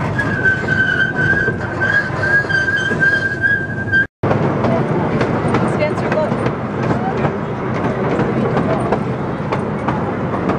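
Small passenger train running, heard from its open car: a steady rumble of wheels on rails with light clicking. A high, wavering squeal sits over the rumble for the first four seconds. The sound cuts out for an instant about four seconds in.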